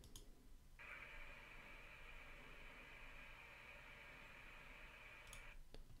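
Faint mouse click, then about five seconds of faint, steady noise with no voice from in-flight cockpit footage being played back; it stops abruptly, followed by another faint click as playback is paused.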